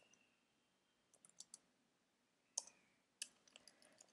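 Faint clicks of computer keyboard keys, a handful of scattered keystrokes as a word is typed, over near silence.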